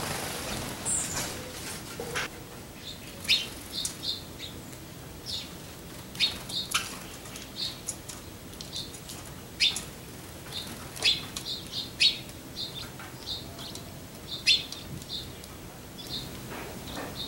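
Songbirds giving short, sharp chirps over and over, irregularly, about one or two a second: alarm calls at a hawk nearby. A brief rushing noise comes in the first second.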